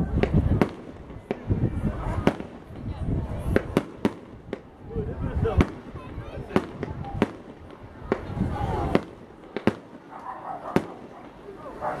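Aerial fireworks bursting: an irregular string of sharp bangs, about one or two a second.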